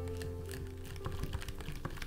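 Silicone-coated wire whisk beating matcha powder into a thick paste in a small glass bowl, the wires making quick, irregular clicks and taps against the glass. Background music plays underneath.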